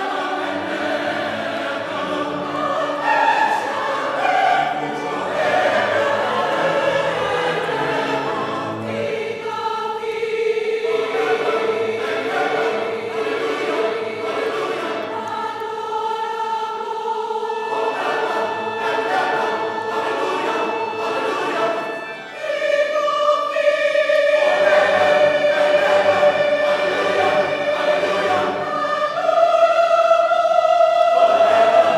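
Mixed choir of men and women singing, holding long sustained chords. A brief break about three-quarters of the way through, then the voices enter on a new, higher held chord.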